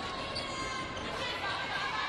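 Steady crowd noise in an indoor arena during a volleyball rally, with faint knocks of the ball being played.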